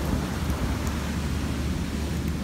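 Steady wind buffeting the microphone with a low rumble, over an even rush of surf.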